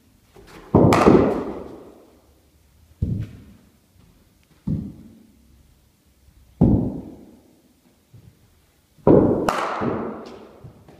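Cricket bat striking the ball and the ball thudding onto the mat and into the nets: a series of sharp knocks, each with an echoing tail, the loudest about a second in and a close pair near the end.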